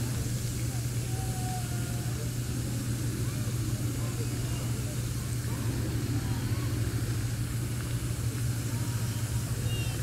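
Steady low hum of outdoor background noise, with a few faint short chirps over it.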